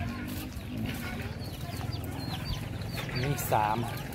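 Chickens clucking, with short high chirps scattered throughout.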